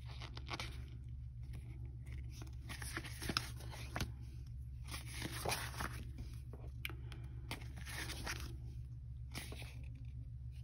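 Paper sticker sheets of a planner sticker kit rustling and crackling in irregular bursts as they are turned by hand, with a few small sharp clicks, over a steady low hum.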